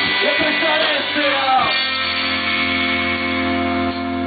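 Live rock band with electric guitar, bass and drums playing: a moving melody line over drum strokes, then from about halfway the band holds one long ringing chord.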